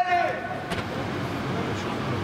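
A footballer's shout that breaks off just after the start, then a steady low noise of play with one sharp knock a little under a second in.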